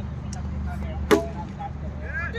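A cricket bat hitting the ball once, a single sharp crack about a second in.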